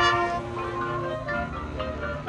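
High school marching band brass playing: a loud held chord that fades over the first second, then softer moving notes.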